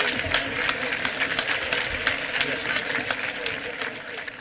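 Audience applauding, many hands clapping unevenly, starting to die away near the end.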